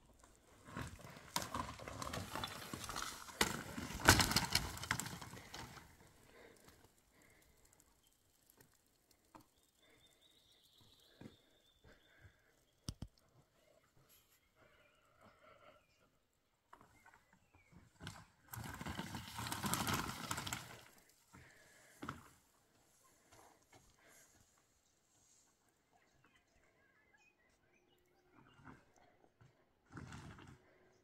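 Footsteps crunching over loose stones and rocky ground, in two stretches of several seconds each, the first the louder. Between them only scattered faint clicks.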